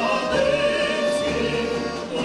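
A woman's and men's voices singing together through microphones, holding one long note with vibrato, with an instrumental ensemble behind them.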